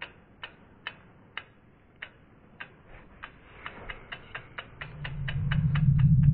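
Logo-reveal sound effect: sharp clock-like ticks, about two a second, quickening to about four a second, with a low drone swelling up under them in the last second.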